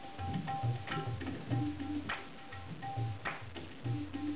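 Tabla being played in a steady rhythm: deep bass strokes from the bayan that glide in pitch, under ringing, tuned strokes from the small dayan drum, with a few sharper cracks.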